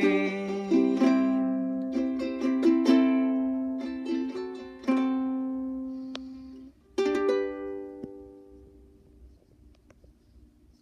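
Ukulele playing the closing bars of a song: a run of plucked notes and chords, each ringing and decaying. A last strum about seven seconds in rings out and fades away.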